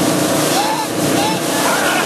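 Motorboat engine running steadily under the loud rush of churning wake water.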